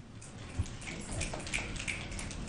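Light, scattered applause from the meeting audience, building about half a second in.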